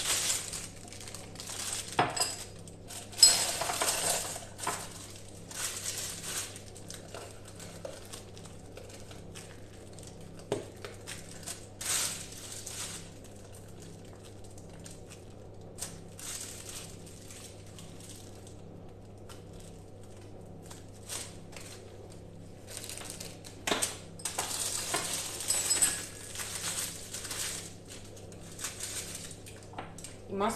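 Plastic piping bags being handled on a kitchen counter: crinkling and rustling in irregular short bursts, with a few light clinks against a glass, over a faint steady low hum.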